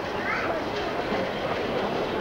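Busy chatter of children's voices, mixed with scattered, clattering knocks of hammering on wood.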